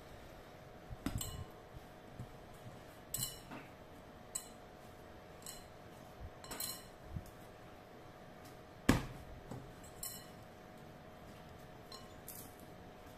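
Clear glass mixing bowl knocking and clinking as bread dough is turned and pressed in it by hand: about eight scattered sharp clinks, the loudest about nine seconds in, over a faint steady hum.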